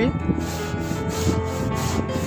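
A steady rushing, scraping noise with faint background music underneath.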